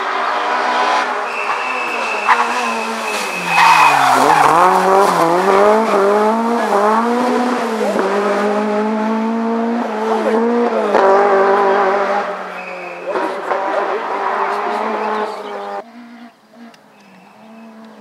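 Rally car engine revving hard and shifting through the gears, its pitch dropping sharply about four seconds in as it brakes and downshifts, then climbing again. It fades to a quieter, lower drone near the end.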